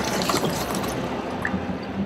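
Water splashing and sloshing as a capsized plastic fishing kayak is lifted and rolled back upright by hand, heaviest at the start.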